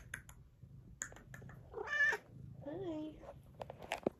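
A pet cat meowing twice: a short, higher meow about two seconds in and a lower, arching one about a second later.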